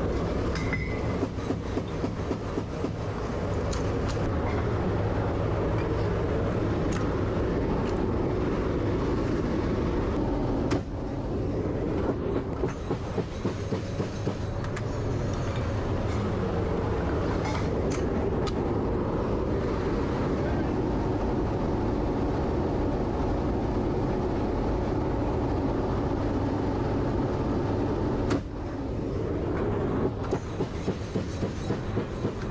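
Steady loud drone of the AC-130J gunship's turboprop engines heard inside the cabin. A quick run of sharp bangs, about three a second, comes a little after ten seconds in and again near the end.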